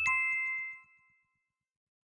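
A two-note "ding" chime sound effect, the second note lower than the first, ringing out and fading away within about a second.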